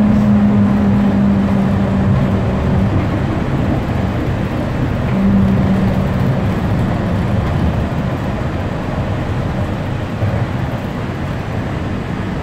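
Monorail train running, heard from inside the passenger car: a steady rumble, with a low hum that comes in for the first few seconds and again about five seconds in.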